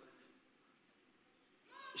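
Near silence: a pause in a man's speech, with his voice starting again near the end.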